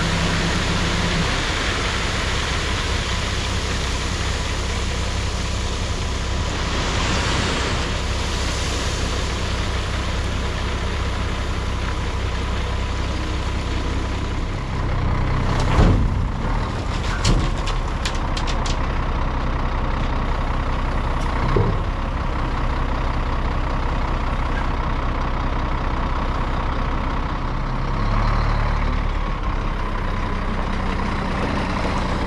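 Scania truck's diesel engine running steadily while tipping from a raised tipper semi-trailer, then pulling forward about halfway through with a heavy knock, followed by a few sharp clicks and another knock a few seconds later. The engine grows louder near the end.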